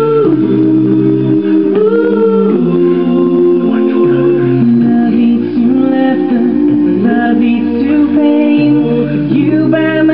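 Recorded a cappella boy-band vocals: several male voices singing in close harmony with no instruments, held chords that change every second or two.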